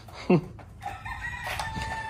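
A rooster crowing in the background: one long held note, starting just before the middle and lasting about a second. It follows a brief, louder falling-pitch cry near the start.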